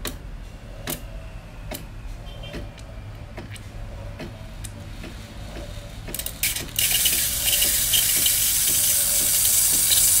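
ACA Boxr home espresso machine running on test after a control-board repair: a low steady hum with a light click about once a second. About seven seconds in, a loud steady hiss starts and runs on.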